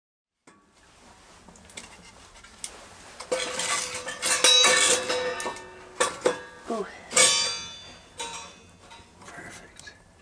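Metal clinking and clanking, with some strikes left ringing, loudest between about three and seven seconds in, mixed with brief snatches of voices.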